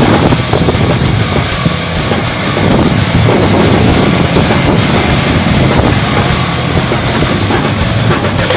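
A John Deere tractor's diesel engine runs under load as it pulls a Horsch Terrano 4 MT cultivator. Over it comes the steady clatter and rattle of the cultivator's tines and packer roller working through stubble and soil.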